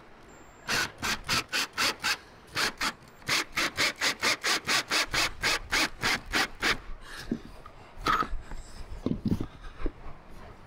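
Ryobi 18V cordless drill driving a screw into a metal antenna mount base, in a fast even run of short bursts, about four a second, that stops about seven seconds in. A few separate knocks follow near the end as the drill is set down.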